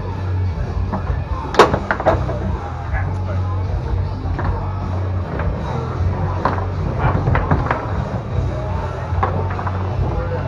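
Foosball in play on a Tornado table: sharp clacks of the hard ball struck by the plastic men and knocking off the table, the loudest about a second and a half in, a few more scattered through. Background music with a steady bass runs underneath.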